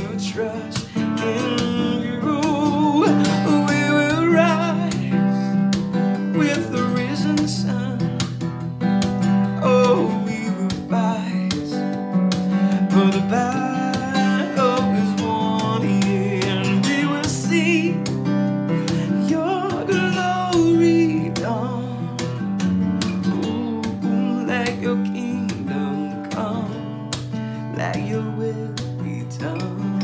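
Acoustic guitar strummed in steady chords, with a man singing over it, the voice rising and falling in long sung lines.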